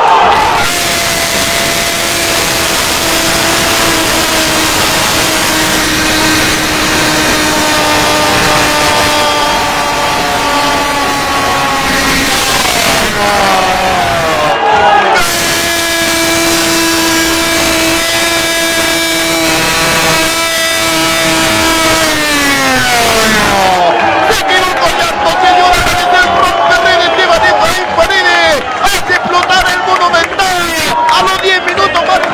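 A radio football commentator's drawn-out goal cry of "gol" for a Colo Colo goal: two long held shouts of about ten seconds each, both at the same pitch, each sliding down at its end. Rapid excited shouting follows near the end, with crowd noise beneath.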